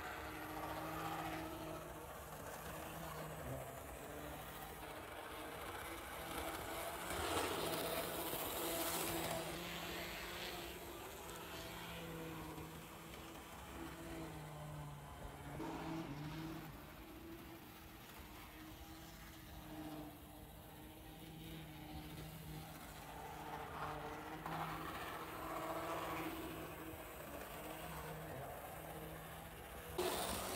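Vintage Bowser HO-scale PCC streetcar running laps on model railroad track: a steady low electric-motor hum with the rolling rattle of its wheels on the rails, running smoothly on its rebuilt drive. A louder rush of rattle comes about seven seconds in and lasts a couple of seconds.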